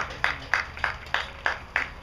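One person clapping close by at a steady pace, about three sharp claps a second.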